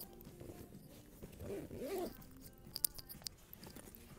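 Faint background music, with rustling from the camera being handled against fabric and two sharp clicks about three seconds in.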